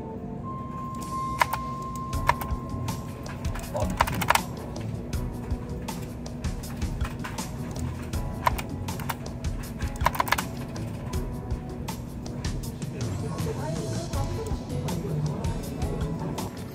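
Computer keyboard keys clicking in irregular taps, with sharper clusters about four seconds in and again about ten seconds in, over background music.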